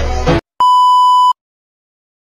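Background music cuts off abruptly, then a single steady electronic beep, a pure high tone like a censor bleep, sounds for under a second.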